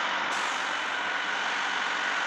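Delivery truck running steadily, a continuous mechanical noise with a faint hiss coming in just after the start.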